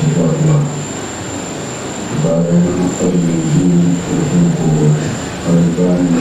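A man's voice chanting in long held notes through a public-address system, with a thin, steady high-pitched electronic whine underneath.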